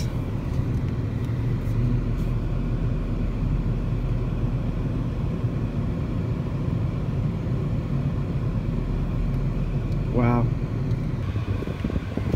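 Steady low engine and road rumble of a car driving slowly, heard from inside the cabin. A short vocal sound comes about ten seconds in.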